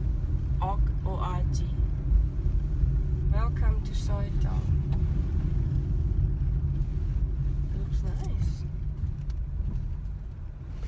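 Steady low rumble of a car's engine and tyres heard from inside the cabin as it drives slowly, easing a little near the end.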